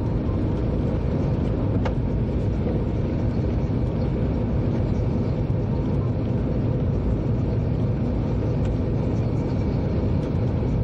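Steady low rumble of a train running along the track, heard from the driver's cab, with one faint click about two seconds in.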